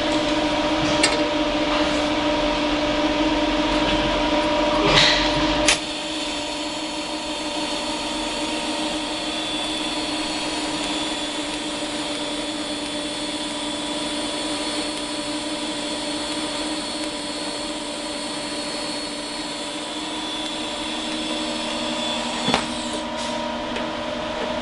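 DC lift-arc TIG arc from a Lincoln Power MIG 360MP burning on 3/16-inch steel plate, a steady hum. There is a brief hiss about five seconds in, then the level drops and holds steady.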